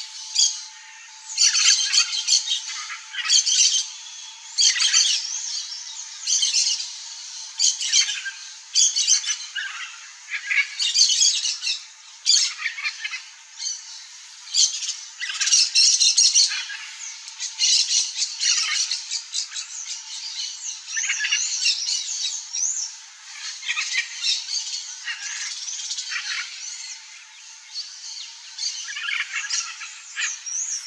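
Birds squawking in repeated short, harsh calls throughout, with quick whistled chirps near the end.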